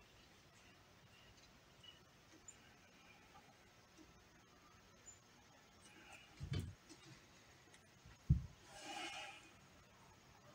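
Quiet room tone. Past the middle comes a dull thump, then a sharper, louder thump, followed near the end by a short breathy hiss.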